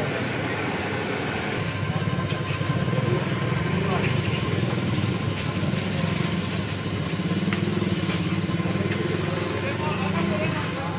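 Motor-driven stirrer running steadily in a pan of peanuts and jaggery syrup, a low machine drone that grows louder about two seconds in. Faint voices sound in the background.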